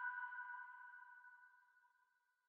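The last held synth notes of an electronic music track ringing out and fading away, gone about a second and a half in.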